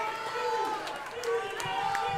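Audience chatter: several indistinct voices talking at once, with a few sharp clicks among them.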